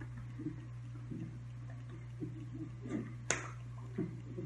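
A steady low hum with a few faint soft knocks, and one sharp click about three seconds in.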